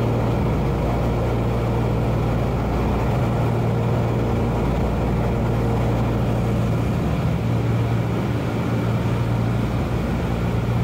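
Steady drone of a Douglas C-47's Pratt & Whitney R-1830 Twin Wasp radial engines and propellers at cruise, heard from inside the cabin: a strong low hum with a constant rushing noise over it.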